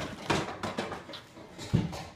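Footsteps scuffing on a concrete driveway: a run of short, uneven steps, with the loudest scuff near the end.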